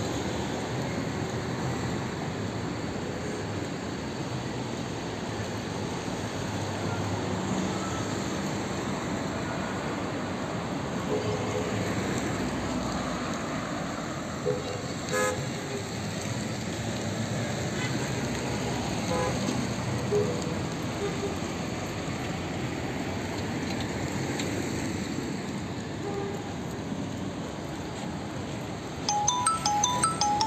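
Night city street ambience: steady traffic noise from passing cars, a few short car horn toots, and background voices. About a second before the end, a tinkling electronic melody starts.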